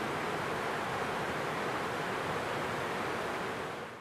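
Steady rush of falling water from a waterfall, fading out in the last half second.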